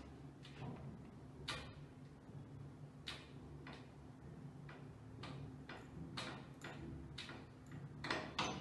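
A hand-pumped trigger spray bottle spritzing onto a glass door: about a dozen short, faint squirts at uneven spacing.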